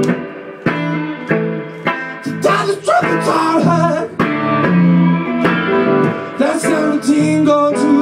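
Electric guitar played live in a bluesy rhythm of struck chords and short riffs, with a man singing the end of a line at the start.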